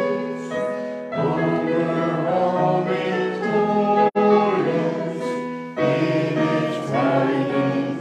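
A congregation singing a hymn together in held, slow notes. The sound drops out for an instant about four seconds in.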